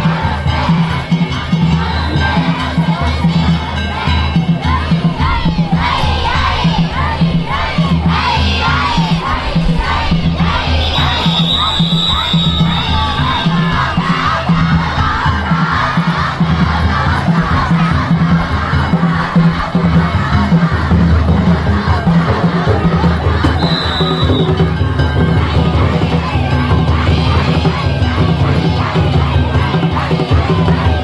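Large crowd of danjiri festival participants shouting and chanting together, over a steady, fast low beat of festival drumming.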